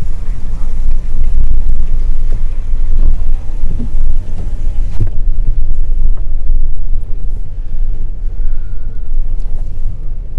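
Car driving slowly over rutted snow and slush, heard from inside the cabin: a steady low rumble, with a single light knock about five seconds in.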